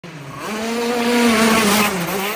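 Engine of a 48 hp racing kart running at high revs as it approaches, growing louder over the first second and then holding a steady high note that dips slightly in pitch near the end.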